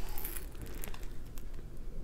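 Faint rustling and light crinkling of a diamond painting canvas being handled and lifted up close, with a few soft clicks.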